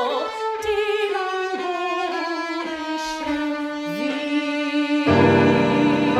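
Violin playing a slow, descending melody with vibrato over piano accompaniment, in a classical art song for soprano, violin and piano; about five seconds in, a fuller, louder chord with deep low notes comes in.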